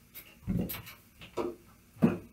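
Handling noise from a guitar being lifted off and set on a stand: a few light knocks and rubs about half a second in and again near one and a half seconds.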